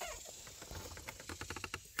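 Faint, quick run of light plastic clicks and rattles lasting just over a second, from car-radio wiring connectors and trim being handled.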